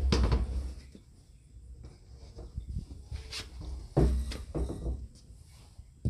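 Liquid soap pouring and splashing from the top holes of a tipped plastic 55-gallon drum into a metal can. Handling noise from the hollow drum comes in two bouts, at the start and again about four seconds in.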